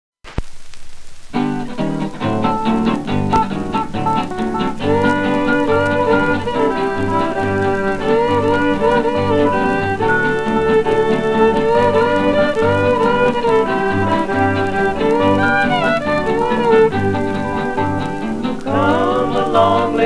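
A 1936 Melotone 78 rpm record playing a string-band country intro: fiddle lead over guitars and a string bass on a steady beat, with surface hiss. A moment of needle hiss comes first, and the music starts about a second in.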